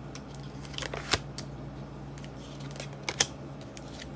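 Tarot cards being drawn from the deck and laid on a glass tabletop: a scattering of sharp clicks and taps, the loudest about a second in and just after three seconds, over a low steady hum.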